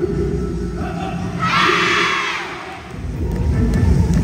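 A large group of children shouting together in one loud shout of about a second, starting about a second and a half in, over background music.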